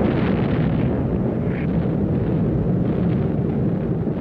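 Steady, dense low rumble of a bombing raid, with explosions running together into one continuous rumble and no single blast standing out.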